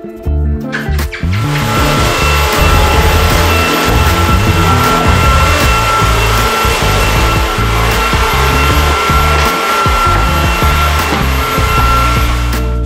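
Cordless stick vacuum cleaner running: a steady hiss with a high whine, switched on about a second in. Background music with a beat plays underneath.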